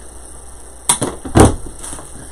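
Two short sharp knocks about half a second apart, a little past a second in, the second louder with a dull low thump: craft items being handled and set down on a worktable.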